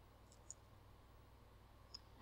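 Near silence: room tone with a faint low hum and a couple of small clicks, the clearest about half a second in.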